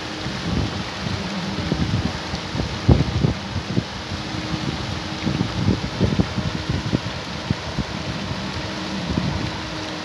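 Wind buffeting the microphone in irregular gusts over the steady, rain-like splashing hiss of paddlewheel aerators churning a shrimp pond.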